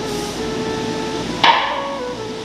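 A single sharp knock, a blow on something hard, about one and a half seconds in, over faint steady tones in the background.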